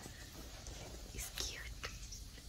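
A soft whispering voice, breathy and unvoiced, with a few hushed bursts in the second half.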